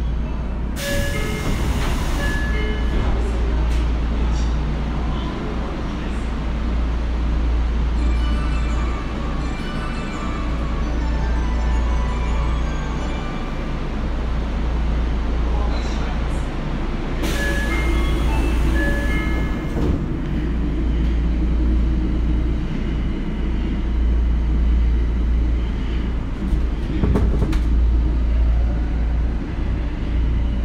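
Tokyo Metro 02 series subway car running, heard from inside the passenger cabin: a steady low rumble of wheels and running gear. It is broken by two stretches of loud high hiss with short squeals, about a second in and again about 17 seconds in.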